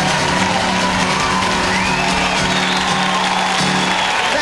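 Live band holding the song's closing chord, with the audience cheering and whooping over it; the chord stops near the end.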